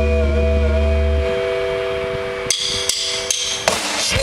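Live rock band in a breakdown: a guitar chord rings on and the bass drops out about a second in. Then four sharp, evenly spaced clicks from the drums lead the band back in at the end.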